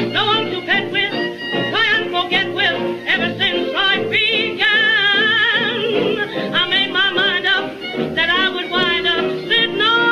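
Old popular-song record from the jazz and blues era: a band accompanying a wavering lead line with wide vibrato, the sound thin and cut off in the treble as on an early disc recording.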